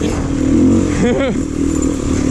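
Beta dirt bike's engine running steadily under way on a gravel trail.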